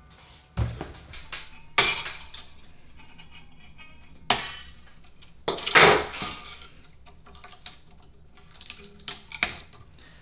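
Old rusty guitar strings and tuner hardware being handled at the headstock: scattered metallic clicks and clinks, with one longer, louder scrape just before six seconds in.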